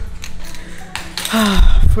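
A woman's heavy sigh: a long breathy exhale with a short voiced sound in it, loudest near the end. A couple of small clicks come before it.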